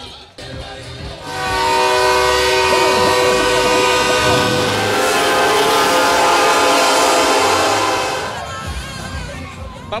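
Heavy dump trucks' air horns blowing one long, loud, steady chord for about seven seconds, starting about a second in and dying away near the end.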